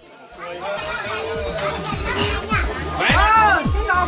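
Electronic dance music fading up over the first half-second: a steady pounding bass beat with repeated falling drum sweeps, over people's voices chattering.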